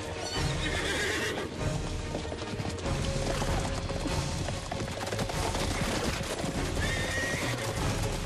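Several horses galloping, with a steady run of hoofbeats. A horse whinnies about half a second in and again near the end.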